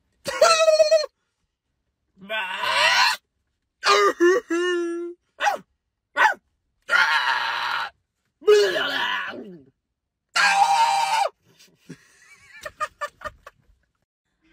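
Young men making wordless vocal noises in turn, about seven separate calls of roughly a second each with silence between, several sliding up or down in pitch; short broken bursts near the end as one of them breaks into laughter.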